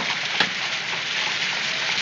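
Steady rain falling, with two sharp clicks about half a second apart at the start.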